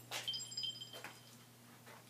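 Footsteps on a floor, about one step a second, with a brief high squeak lasting under a second a moment after the first step. A faint steady low hum runs underneath.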